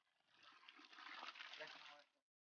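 Faint water pouring and splashing into a muddy pit while a shovel stirs the slurry, getting louder toward the end. The water is being run in to wash lime and soil into the gaps of a stone footing.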